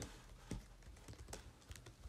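Faint computer-keyboard typing: a scattering of separate key clicks as code is entered.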